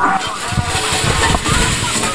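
A motor-driven machine handling corn cobs running, a loud steady rushing noise with a rough, uneven rumble underneath.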